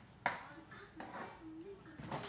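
A single sharp knock, then a few lighter clicks and faint voices of people talking in the room.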